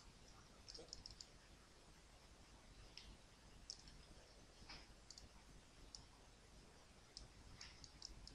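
Faint computer mouse clicks, scattered irregularly, a few close together and others a second or so apart, over low room hiss.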